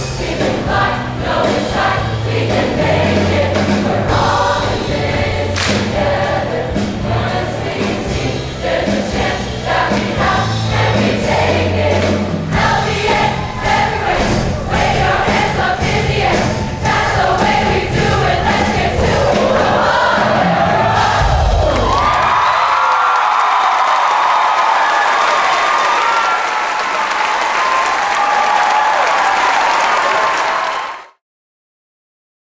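Large mixed choir singing over a full accompaniment with a steady bass beat. The music ends on a final low hit a little over two-thirds of the way through, and loud audience cheering follows.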